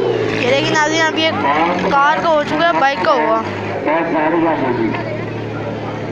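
A car engine running with a steady low hum under loud voices, the voices strongest in the first half.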